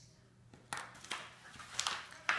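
Paper packaging rustling and crinkling in a few short bursts, starting a little under a second in, as a toy is pulled out of its wrapping by hand.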